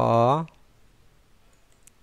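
A man's voice saying the Arabic letter name "kha" once, its vowel drawn out for about half a second, followed by a few faint computer mouse clicks.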